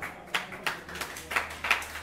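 Brief, scattered hand-clapping from a few people in an audience, the claps coming unevenly at about four or five a second.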